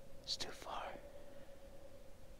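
A short whisper from a man, about half a second long, starting with a hiss.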